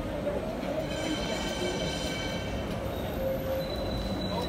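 Tram wheels squealing on the rails: a high, thin, steady whine with several overtones lasting about a second and a half, over steady street noise.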